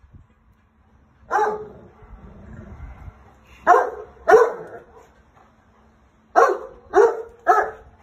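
A large dog barking six times: one bark, then a pair, then three in quick succession.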